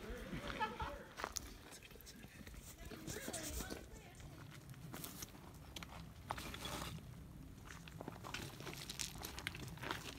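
Faint, irregular footsteps on a rocky, gravelly trail, with faint voices now and then.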